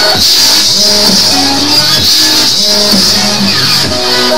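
Dubstep music playing: an electronic beat with bass notes that slide up and down in pitch and a steady high shaker-like hiss, with no singing in this stretch.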